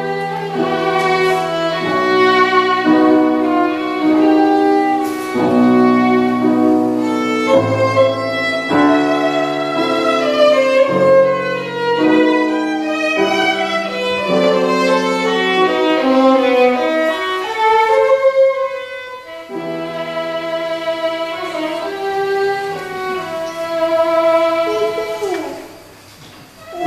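Violin and piano playing together, the violin carrying the melody in long held notes over the piano accompaniment. The music thins briefly about two-thirds of the way through and falls away to a short pause near the end, after a downward slide on the violin.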